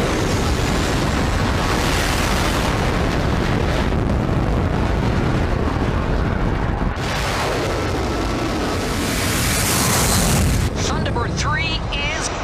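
Thunderbird 3's rocket engines firing for launch: a loud, continuous roar that starts suddenly, drops back about seven seconds in, then builds again before easing near the end.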